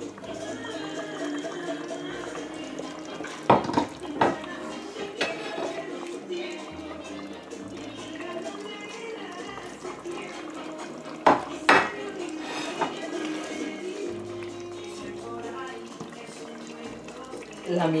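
A metal ladle clinking and scraping against a cooking pot and a ceramic plate as curry is served, with a few sharp knocks in two clusters, about a third of the way in and again past the middle. Background music plays throughout.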